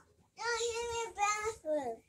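A child singing out in a sing-song voice: one long held note, a shorter higher note, then a falling glide near the end.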